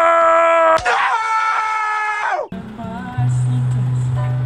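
A man's long, drawn-out scream of "No!", held on one pitch, then a second, wavering scream that cuts off suddenly about two and a half seconds in. A steady low music note follows under quieter speech.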